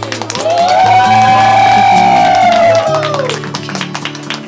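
Background music: a slow piece with one long held note that swells in about half a second in and fades near the end, over sustained bass notes.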